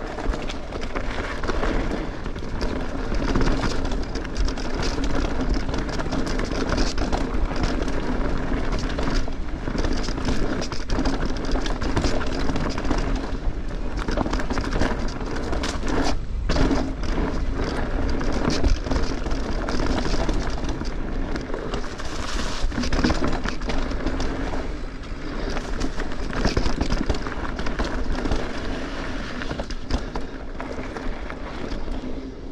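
Mountain bike being ridden down a rocky dirt singletrack: steady tyre noise over dirt and loose rocks, with the bike rattling and clicking over the bumps.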